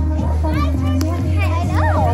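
Loud music with a heavy, steady bass, mixed with the voices of children and other people calling out around it. A high rising-and-falling voice or shout comes near the end.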